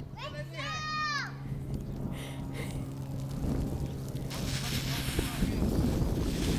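In-ground lawn sprinklers coming on about four seconds in: a steady hiss of water spray. Before that a voice calls out briefly over a low steady hum.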